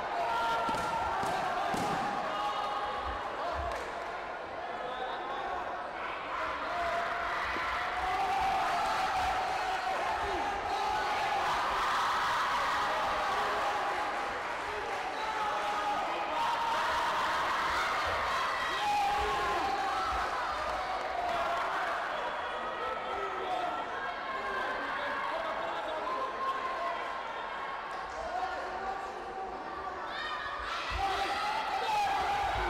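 Many indistinct voices talking and calling out, echoing in a large sports hall, with a few dull thuds now and then.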